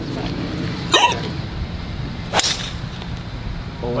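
Golf driver striking a ball off the tee: one sharp crack about two and a half seconds in, over a steady low hum. A brief vocal sound comes about a second in.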